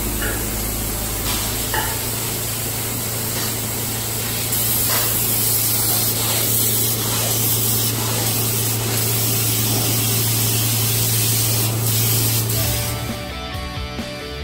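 Closed-cell spray foam gun spraying into wall cavities: a steady hiss over a steady low hum, a little louder after about four seconds. It stops about a second before the end, when music comes in.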